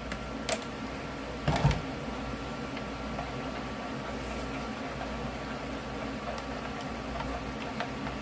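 A plastic pouring pitcher is moved and set down on a tray, giving a soft click and then a light knock about a second and a half in. A steady mechanical hum runs underneath.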